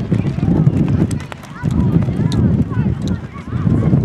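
Rumbling wind and handling noise on a handheld camera's microphone as it moves across the field, with faint children's voices and calls in the distance.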